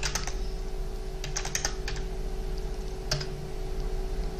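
Scattered keystrokes on a computer keyboard: a tap near the start, a quick run of several about a second in, and one more near the end, over a faint steady hum.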